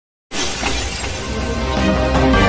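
Logo intro sting: a sudden shattering crash effect about a third of a second in, its noise slowly fading while intro music builds under it.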